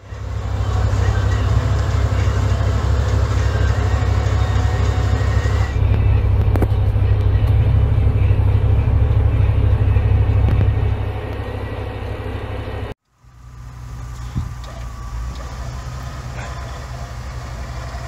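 Engines of 4x4 trucks running under load in deep snow: a steady low rumble. About thirteen seconds in it breaks off and gives way to a quieter, steadier engine running.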